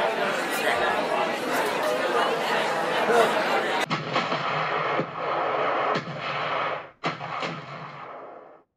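A clamour of many overlapping voices. About four seconds in it cuts to a rougher recording in which three sharp reports of artillery fire go off about a second apart.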